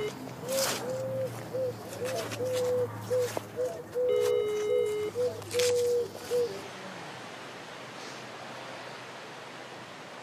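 A pigeon cooing, a run of about a dozen short, pitched coos over the first six and a half seconds. About four seconds in, a steady one-second telephone ringback tone sounds from a mobile phone's speaker as a call is placed.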